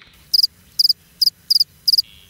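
Cricket chirping sound effect: a run of short, high chirps, about two a second. It is played as the stock "crickets" gag for an awkward silence, meaning nobody has heard of the person just named.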